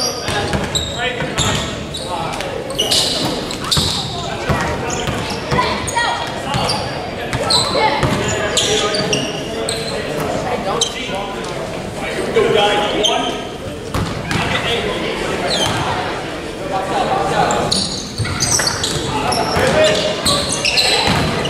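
Basketball bouncing on a hardwood gym floor, struck again and again, under indistinct voices of players and onlookers, all echoing in a large gym.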